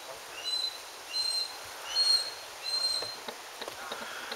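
A bird calling four times, about every three-quarters of a second. Each call is a short lower note running into a higher, clear whistled note, and the third call is the loudest.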